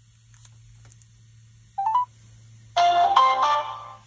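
Telephone tones heard through the phone's speaker as an outgoing call goes through: a short rising three-note beep about halfway in, then a melodic electronic jingle of several notes near the end. A faint steady hum runs underneath.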